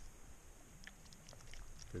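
A dog snapping up a scrap of raw deer meat from a hand and gulping it down unchewed: a few faint, wet mouth clicks.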